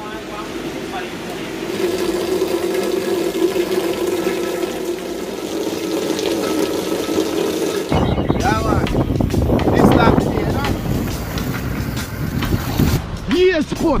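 Steady downpour of rain with a faint musical tone over it; about eight seconds in it cuts abruptly to louder music and voices.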